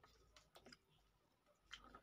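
A few faint, soft clicks of eating by hand: fingers working and gathering pulao rice from a plate.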